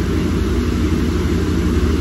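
A steady low machine hum, unchanging throughout, with no speech.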